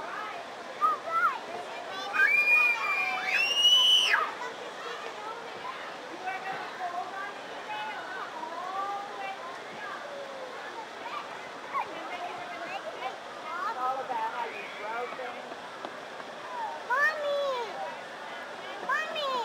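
Children's voices calling and chattering, the loudest a high-pitched child's squeal about two to four seconds in, over a steady background rush.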